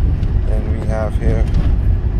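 Steady low rumble inside a car's cabin, with a voice speaking briefly in the middle.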